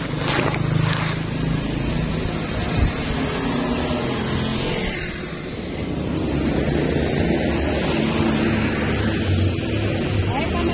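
Street traffic: cars and motorcycles passing with a steady engine rumble.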